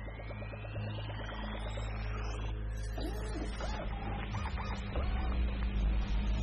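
Synthesized sci-fi sound effects from a stage show's soundtrack: a rising electronic sweep with fast ticking, then warbling computer-like chirps, over a low rumble that swells near the end.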